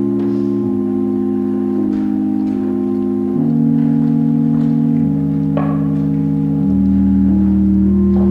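Organ playing slow, sustained chords that change every second or two, with deeper bass notes coming in about two-thirds of the way through: offertory music while the offering is collected.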